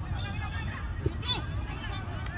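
Players shouting and calling to each other across a football pitch, the voices distant and wavering, with a single thump about a second in. A steady low rumble runs underneath.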